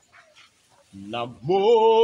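A man's voice breaks into a loud, long held sung note about a second in, sliding briefly up in pitch before holding steady, the start of a chanted worship song.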